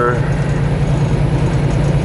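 Semi truck's diesel engine and road noise heard inside the cab at highway speed: a steady low rumble.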